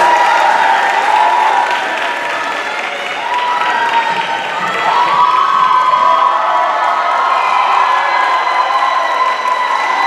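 Audience applauding and cheering, with long shrill cheers held over the clapping.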